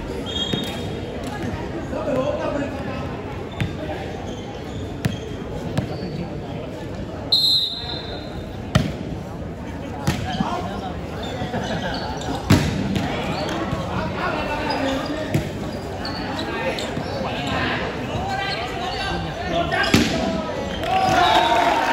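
Volleyball rally: sharp smacks of hands hitting the ball every second or two over steady crowd chatter. There is a short whistle blast about seven seconds in.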